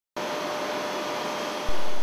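Steady rushing machinery noise in a power station turbine hall, with a faint steady hum-tone running through it. It steps up louder shortly before the end.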